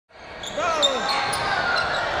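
Live courtside sound of an indoor basketball game, fading in at the start: a ball bouncing, short high squeaks and a player's voice calling out over the arena's hum.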